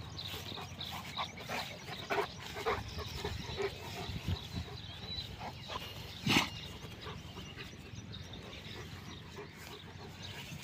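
A dog making short sounds in an irregular series, with one louder, sharper sound a little past the middle.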